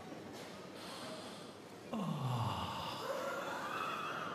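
Bagpipes blown comically out of tune about halfway in: a low note sliding steeply down, then a higher wavering note gliding upward, over the steady murmur of a large hall.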